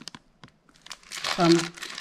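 Clear plastic bag wrapped around a remote control crinkling as it is handled, in short bursts at the start and again about a second in.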